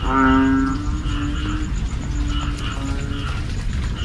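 Banded bullfrogs (ểnh ương, Kaloula pulchra) calling: one loud, long, low call of under a second at the start, then several fainter calls of the same kind from other frogs, repeating every half second or so. Behind them, a steady background of high chirps.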